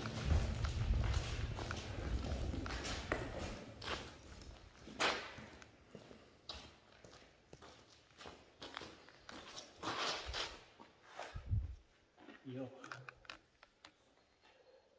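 Footsteps scuffing and crunching on the gritty dirt floor of a concrete tunnel, irregular and fairly quiet, with a low rumble during the first few seconds.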